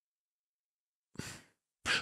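Silence, then about a second in a man's short audible breath, starting with a faint mouth click, as he draws breath before speaking. A voice starts right at the end.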